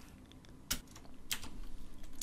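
Computer keyboard being typed on: a few scattered keystrokes, the clearest a little under a second in and another about half a second later.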